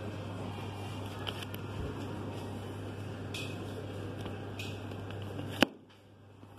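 Steady low hum of indoor room tone, with a few faint ticks and one sharp click near the end as shrink-wrapped vinyl records in a wooden bin are handled.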